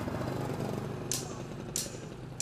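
A motorcycle passing on the street, its engine running with a steady low rumble. From about a second in, a short sharp hiss repeats evenly about every two-thirds of a second.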